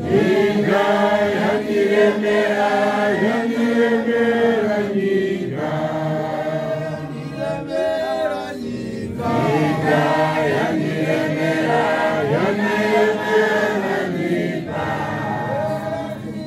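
A church choir chanting a Shona hymn, several voices together in long sung phrases with brief breaks between them.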